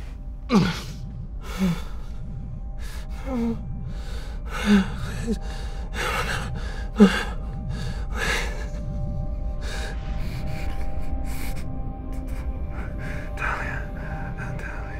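A man gasping and groaning in short strained bursts, about six in the first seven seconds, each dropping in pitch, the sharpest right at the start and about seven seconds in. Under them runs tense background music with steady held tones and a low rumble.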